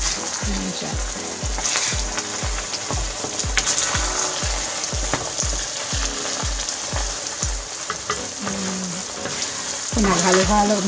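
Thick biko mixture of glutinous rice, coconut milk and brown sugar sizzling in a nonstick pan over low heat while it is stirred with a wooden spoon. An evenly spaced low thump, about three a second, runs underneath and stops about eight seconds in.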